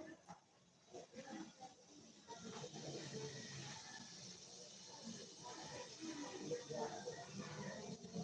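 A person's voice, faint and low, with a steady hiss that sets in about two seconds in.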